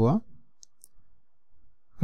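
A man's voice trails off at the start, then a pause with two faint, brief clicks of a stylus on a drawing tablet.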